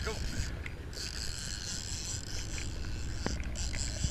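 Steady background noise on a sportfishing boat at sea: a low engine drone with wind and water hiss, and a single short click about three seconds in.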